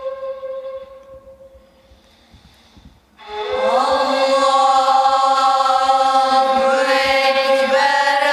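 A ney reed flute holds a steady note that fades away in the first second or so. After a short lull, a group of boys starts chanting in unison about three seconds in, on long held notes.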